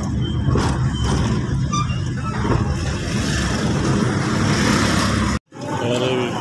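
Engine and road noise heard from inside the cab of a small moving vehicle, a steady low rumble. It cuts off abruptly about five and a half seconds in.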